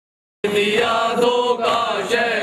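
Chanting voices that cut in suddenly about half a second in, after complete silence, a devotional chant at the start of a new recording.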